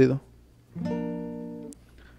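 A single A-sharp major chord strummed once on a capoed classical guitar about three quarters of a second in. It rings and fades for about a second, then is damped suddenly with a short click.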